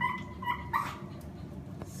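A dog whining anxiously, giving a few short high-pitched whines in quick succession that stop a little before the middle.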